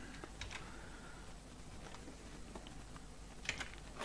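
Faint, scattered clicks of typing on a computer keyboard, a few light taps with the loudest pair near the end, over quiet room tone.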